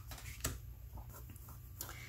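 Tarot cards being handled and laid on a table: a soft click about half a second in and another near the end, over quiet room tone.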